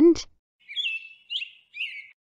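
Bird chirps: three short, high calls in quick succession, with little slides in pitch.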